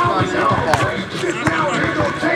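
A basketball bouncing a few times on an outdoor hard court as it is dribbled, over players' voices.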